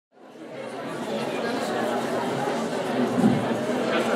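Audience chatter: many people talking at once in a large hall, fading up from silence over the first second.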